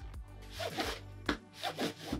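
Cardboard lens box being opened and its contents slid out: a few short rubbing, scraping sounds over soft background music.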